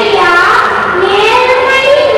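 A young boy singing solo, holding long notes that glide slowly up and down.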